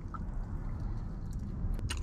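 Biting into and chewing a fried chicken sandwich, with soft wet mouth sounds over a steady low hum, and two sharp clicks near the end.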